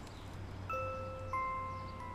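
Background music: two soft, bell-like chime notes, the first under a second in and a second a little after halfway, each ringing on.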